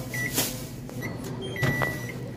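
A commercial microwave oven's keypad beeping as its buttons are pressed: a short beep a fraction of a second in, another about a second in, and a longer beep near the end, with sharp clicks of the buttons and the door latch.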